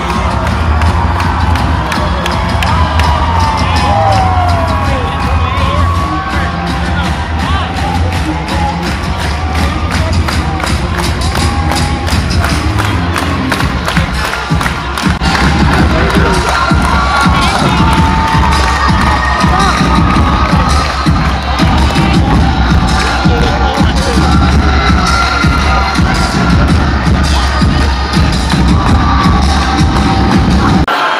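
A crowd of teenagers cheering, whooping and shouting over loud music with a heavy, steady bass.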